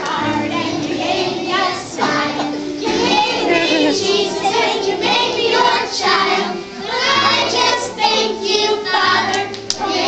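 A group of preschool children singing a song together, with instrumental accompaniment holding steady low notes underneath.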